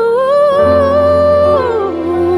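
A female vocalist holds one long wordless note in a Christmas ballad, rising slightly and then gliding down near the end into a lower note with vibrato. A soft low accompaniment chord comes in under it about half a second in.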